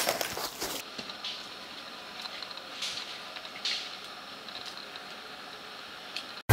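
Footsteps and rustling through dense jungle undergrowth for about the first second, then a quieter steady outdoor background with a few soft, brief swishes.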